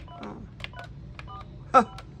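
Keypad of a Sharp UX-D57CW fax phone pressed key by key: about four quick presses, each giving a click and a short two-tone touch-tone beep, the keys responding normally. A man's short "À" near the end is the loudest sound.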